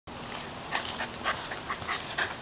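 A dog making short, irregular panting and whimpering sounds, eager to start the search.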